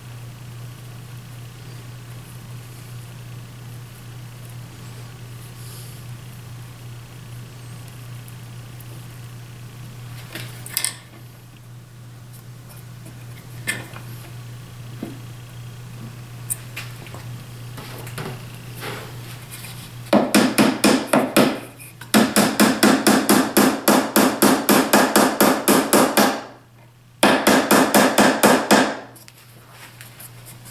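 Rapid, loud taps of a hammer driving glued wooden dovetail keys home into their slots in a box corner, in runs of many quick strikes in the last third with short pauses between them. A few single knocks come before.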